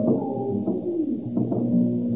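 A late-1960s progressive rock band playing live, with drums under sustained pitched notes that slide into place. The recording sounds muffled, with almost no treble.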